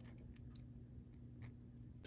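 Near silence with a few faint clicks: plastic handlebars being forced into the frame of a small toy doll bicycle.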